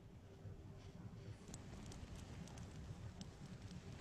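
Faint scattered crackles over a low rustle from a hand-held tinder bundle as the bow-drill ember in it catches and starts to burn into flame.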